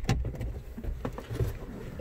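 Low handling rumble with a few faint knocks as a handheld camera is swung around inside a parked vehicle's cabin.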